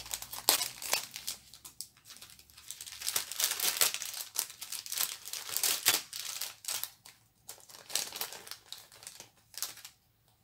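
Clear plastic packets crinkling as they are handled and opened, in irregular spurts of crackle that stop near the end.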